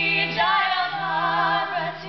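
Two women singing a Sanskrit Kali invocation together in gliding, ornamented lines, over a harmonium holding a steady drone. The voices break briefly and start a new phrase about half a second in.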